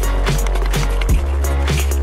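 Background electronic music with a heavy, steady bass and a regular beat.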